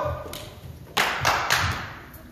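Four quick, sharp taps about a quarter second apart, starting about halfway through, each with a dull thud beneath it.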